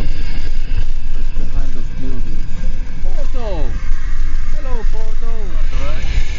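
Steady engine and road rumble inside a moving van, with people's voices calling out over it, several of the calls sweeping down in pitch in the second half.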